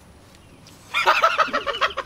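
Men laughing loudly, starting suddenly about a second in as a quick run of short, pitched 'ha' pulses.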